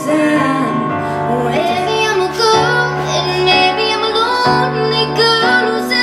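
A female vocalist singing a slow melody into a microphone while playing chords on a Yamaha digital piano, amplified through a small PA.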